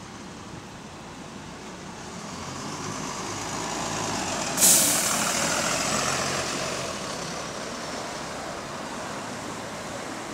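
Volvo double-decker bus pulling away from a stop, its diesel engine rising in pitch as it accelerates past. About halfway through there is a sudden, loud hiss of released air. The engine then fades as the bus drives off.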